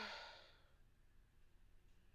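A man's single sigh: a breathy exhale with a brief voiced start, fading out within about half a second.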